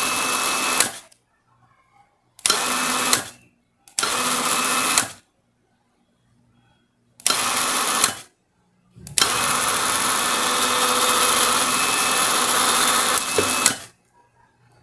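A 12 V electric winch running in bursts at the press of its remote's buttons, its motor and gears driving the cable drum. Each run starts and stops sharply: four short runs of about a second, then one of about four and a half seconds near the end.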